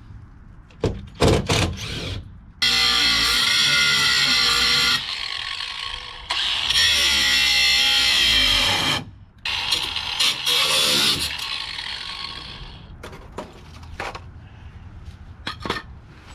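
Angle grinder running against the rusted sheet steel of an RV basement box, in three long bursts of high-pitched whine that wavers as the disc bites. A few sharp knocks and clicks come before the first burst and again near the end.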